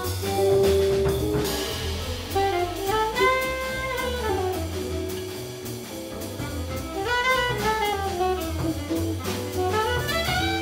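Live small-group jazz: an alto saxophone plays melodic phrases that rise and fall, over upright bass, drum kit with cymbals, and guitar. A long held note sounds at the start and ends about a second and a half in, before the saxophone line takes over.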